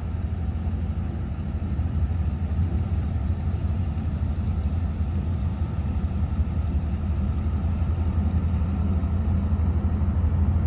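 Tug's diesel engine running steadily as it pushes a barge along the canal. It makes a continuous low rumble that grows slightly louder toward the end as the tug draws nearer.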